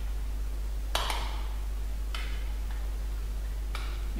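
A few sharp clicks from operating the whiteboard software, spaced a second or so apart, the loudest about a second in, over a steady low electrical hum.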